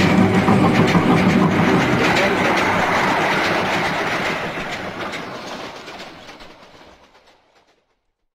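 Train running on rails, its wheels clattering over the rail joints, fading out steadily over the last few seconds.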